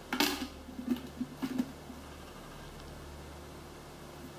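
Plastic clicks and knocks from a yellow sharps container as a used injection-pen needle is dropped in. The sharpest click comes just after the start, a few lighter knocks follow about a second in, then only quiet room tone.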